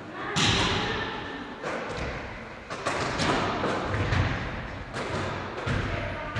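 Basketballs thudding as they are passed and caught and bounce on a wooden gym floor, a thud about every second, each one echoing in the hall.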